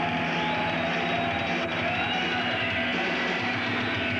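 Heavy metal band playing live, with distorted electric guitar in a dense, steady wall of sound. A pitched line bends up and back down about halfway through.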